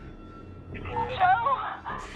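A woman's voice over a handheld two-way radio, thin and cut off at the top, calling out once about a second in, over a low steady drone.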